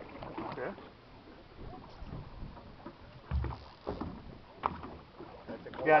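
Faint men's voices and the ambient noise of a small boat on open water, with a low thump a little over three seconds in.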